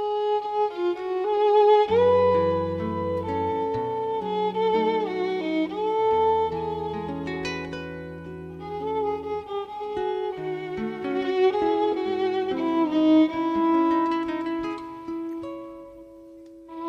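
Instrumental introduction of a tango recording: a violin playing the melody with vibrato over guitar accompaniment.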